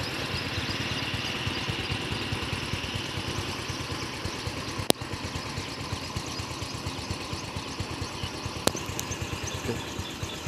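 An engine running steadily with a fast, even pulse, broken by two sharp clicks about five and nine seconds in.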